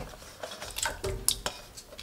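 Thin potato slices tipped off a steel plate into a pan of water: a few soft splashes and light clinks of metal.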